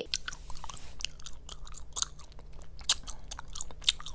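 Sheets of paper being handled close to a table microphone: irregular soft crackles and clicks over a low steady room hum.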